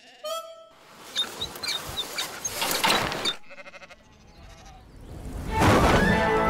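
Cartoon soundtrack of music and sound effects: a short sheep bleat just after the start, a rapid rattle a little past the middle, and a swell of noise that grows loud near the end.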